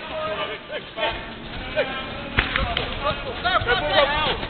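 Footballers' shouts and calls across the pitch, with a couple of sharp thuds of the ball being kicked about two and a half seconds in.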